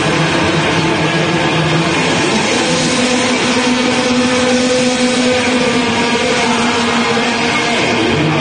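A death metal band playing live, loud and dense: heavily distorted guitars hold low chords over drumming. The chord moves up about three seconds in and drops back near the end.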